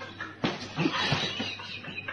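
A man's startled cry that breaks in suddenly about half a second in and carries on in short, broken squeals.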